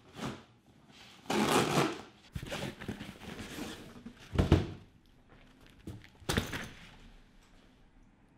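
A cardboard shipping box being opened by hand: flaps and packing scraping and rustling in two spells, with a sharp knock about four and a half seconds in and another a couple of seconds later as the padded case inside is handled.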